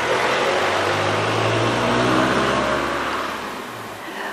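A car passing close by on the road. Its engine hum and tyre noise swell to a peak about halfway through, then fade away.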